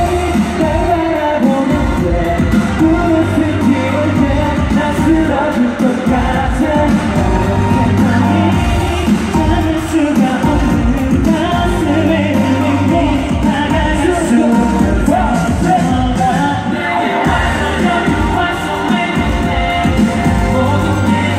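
K-pop boy group singing live over a loud pop backing track with a steady beat.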